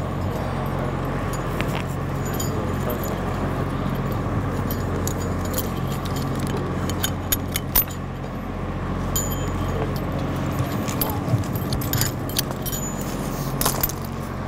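Metal buckles, D-rings and snap hooks of a fall-protection harness clinking and jingling as it is handled, in scattered sharp clicks that bunch up in the middle and near the end. A steady low hum runs underneath.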